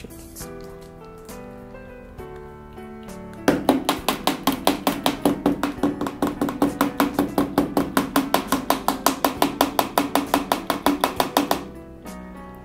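Background instrumental music: held notes at first, then about a third of the way in a loud, fast, even beat of roughly six strokes a second comes in and runs until shortly before the end.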